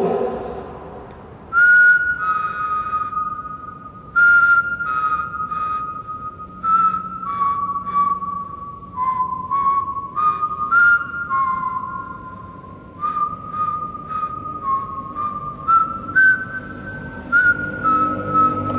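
A person whistling a slow tune, with clear single notes held about half a second to a second each. The melody steps down in pitch over the first half and climbs back up toward the end.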